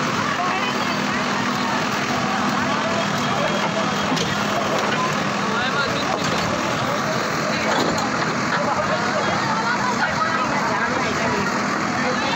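Backhoe loader's diesel engine running with a steady hum while it scoops rubble, under the chatter of a crowd.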